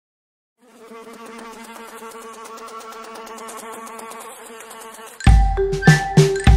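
Cartoon fly buzzing sound effect: a steady pulsing buzz that starts about half a second in. About five seconds in, children's song music takes over, with heavy bass beats and chime-like bell tones.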